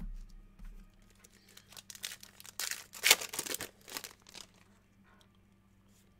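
A 2019 Topps Gold Label baseball card pack's wrapper being torn open and crinkled by hand: a run of crackling rustles about two seconds in, loudest just after three seconds, dying away by about four and a half seconds.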